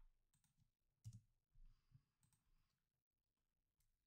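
Near silence: room tone with a few faint computer mouse clicks, about a second in and again shortly after.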